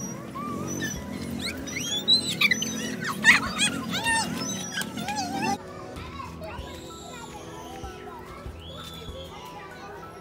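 Children shouting and squealing at play, with music playing underneath. About halfway through the sound drops off suddenly, and quieter voices and the music carry on.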